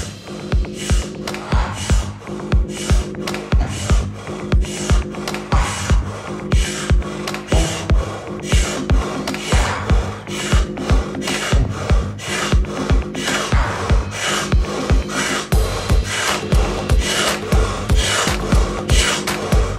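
A man breathing quickly and forcefully in and out through the mouth, each breath a short rasping rush, one after another throughout. Underneath is background music with held chords and a steady low beat.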